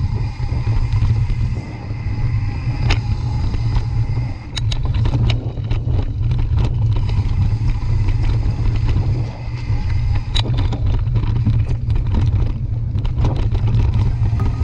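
Mountain bike rolling fast over a dirt trail, heard from a bike-mounted camera: a loud, steady low rumble of wind buffeting the microphone and tyres on the ground, with frequent sharp clicks and knocks as the bike rattles over bumps and roots.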